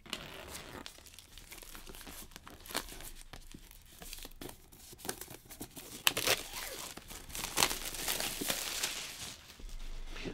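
Plastic shrink wrap being torn and peeled off a laptop box by its pull tabs, a crinkling, crackling rustle that gets louder and busier in the second half.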